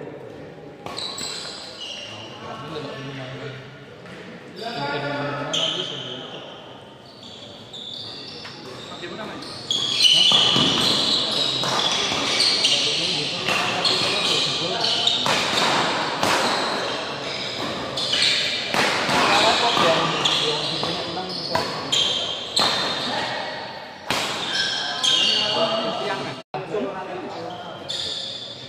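Doubles badminton rally in an echoing indoor hall: rackets striking the shuttlecock and shoes working the court, over voices and calls that grow louder about a third of the way in.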